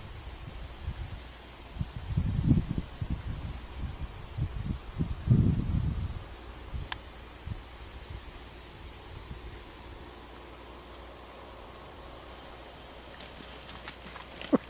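Irregular low thumps and rumble from handling a handheld camera while walking across grass, strongest in the first half, then a quiet steady outdoor background with a faint thin high tone.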